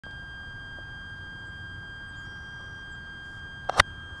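A steady high-pitched electronic whine with a low background hum, then two sharp clicks just before the end, the second the loudest: a hand handling the body-worn camera.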